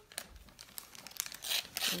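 Wrapping paper on a present crinkling and tearing as it is pulled open by hand, the rustle growing louder in the second half.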